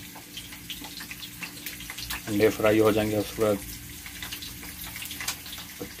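Eggs frying in hot oil: a steady sizzling hiss with scattered small pops. A man speaks briefly in the middle.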